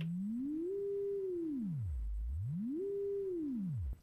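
Pure sine test tone from an Elektron Digitakt, its pitch swept by hand with the Tune control. It glides up to about 400 Hz and holds there, sweeps down to about 60 Hz, climbs back to 400 Hz, then falls below 50 Hz and cuts off just before the end.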